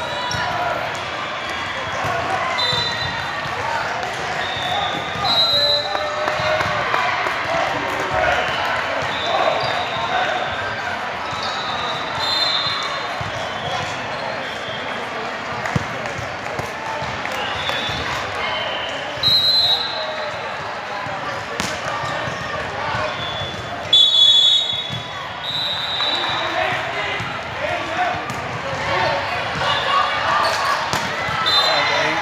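Busy volleyball hall: many overlapping voices of players and spectators echoing through a large gym, with the sharp thuds of volleyballs being hit and bouncing on the hardwood courts. A couple of louder bursts come about two-thirds of the way through.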